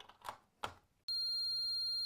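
A plug-in socket tester is pushed into a double wall socket with a few short clicks. About a second in, its buzzer starts a steady, high-pitched beep, which shows the socket is live.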